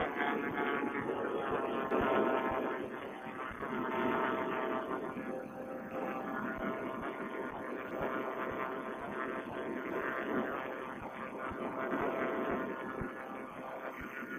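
Vittorazi Moster paramotor engine running steadily in flight, with wind rush, heard thin and muffled through a Bluetooth headset microphone.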